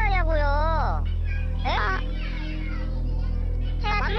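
A student's high-pitched, angry shouting voice swearing in Korean, over steady low background music.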